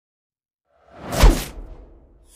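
Intro whoosh sound effect: silent at first, it swells in nearly a second in, peaks with a low hit and a downward sweep about a second and a quarter in, then fades.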